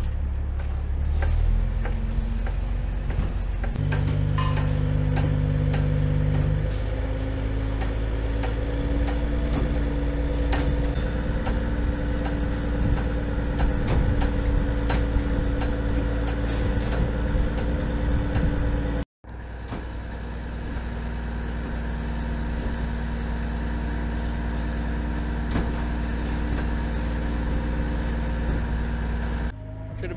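Truck engine running steadily while a self-unloading trailer's moving floor pushes a load of sawdust out of its rear, with scattered clanks and knocks. The engine's pitch shifts in steps over the first several seconds.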